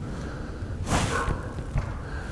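A person's short, sharp breath, a sniff or exhale close to the microphone, about a second in, over a steady low rumble.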